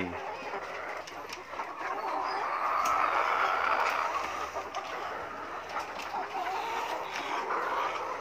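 A flock of caged young laying hens clucking together in a dense chorus that swells a couple of seconds in and eases off again.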